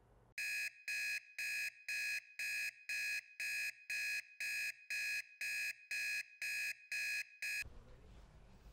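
Smartphone alarm beeping: a high electronic beep repeated about twice a second, fifteen times, cutting off suddenly just before the end.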